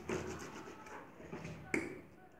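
Hands pressing and patting wet recycled-paper pulp in a plastic tub of water, a soft wet rustle, with one sharp slap near the end.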